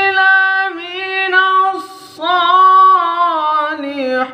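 A young man's solo voice in melodic Qur'an recitation (tilawah), holding long, high, ornamented notes with wavering pitch and a short break about two seconds in.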